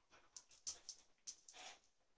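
Near silence with a few faint clicks and a brief soft rustle about one and a half seconds in: small movement noises from a dog nosing around a wicker toy basket.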